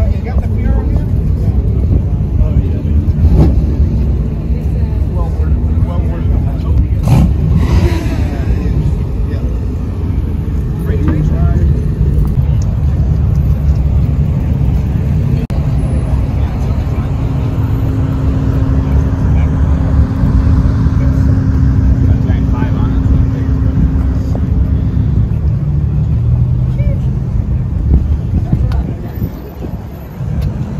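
Car engines running at a car show, a steady low rumble with an engine tone held for several seconds past the middle, over people talking.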